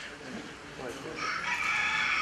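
High, steady electronic tones, a microwave oven's buzzer sound played over the hall's speakers, starting a little over a second in, with faint audience murmur beneath.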